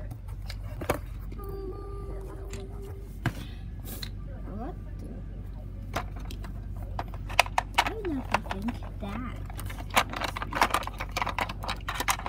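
Light, sharp clicks and taps, sparse at first and coming thick and fast in the second half, over a steady low hum, with a faint voice murmuring now and then.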